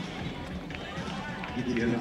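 Outdoor stadium background noise with faint voices, and a voice saying a couple of Czech words near the end.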